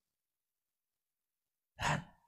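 Silence, then near the end one short breath close to the microphone from a man pausing in his speech.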